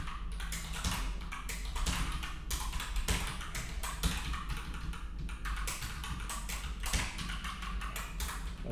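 Typing on a computer keyboard: a fast, uneven run of keystrokes.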